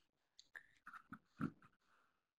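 Near silence: microphone room tone, with a few faint short noises around the middle.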